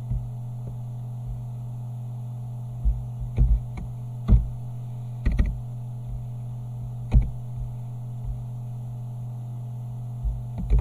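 Steady electrical mains hum with a few sharp computer keyboard and mouse clicks at irregular intervals, grouped between about three and seven seconds in, as numbers are typed into a dialog box.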